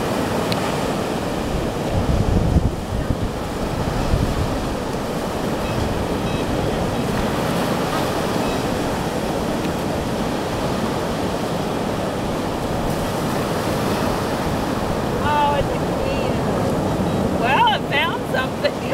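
Ocean surf breaking and washing up the beach, a steady rush throughout, with wind rumbling on the microphone in gusts about two and four seconds in. Faint voices near the end.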